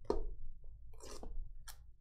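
An aluminium briefcase being handled on a table: a few short knocks and clicks as the metal case is shifted and turned over.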